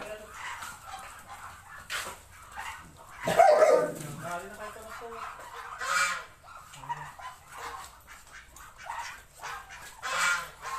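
Flock of Muscovy ducks calling, in short uneven calls, with the loudest call about three and a half seconds in and another about six seconds in.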